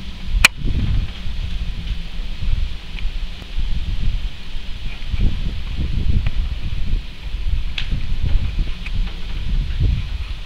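Uneven low rumble of wind and handling noise on the microphone as the camera is moved about, with a sharp click about half a second in. No steady motor tone is heard, so the planer is not running.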